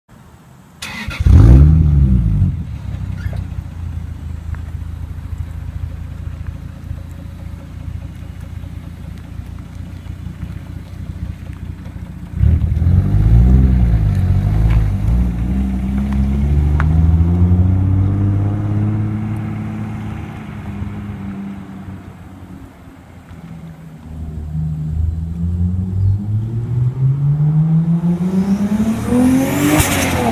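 Single-turbo 1997 Toyota Supra Mk4 straight-six with a TRD exhaust. It starts with a loud flare about a second in and settles to a steady idle, then revs as the car pulls away about twelve seconds in. The pitch rises and falls through the gears, drops off, and climbs again near the end as the car accelerates past.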